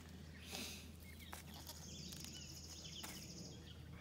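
Quiet outdoor ambience with faint bird chirps and a high, even trill lasting about two seconds in the middle, after a brief rustle about half a second in.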